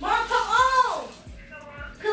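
A woman's high-pitched wailing cry: one long wail that rises and falls in the first second, then a shorter one near the end.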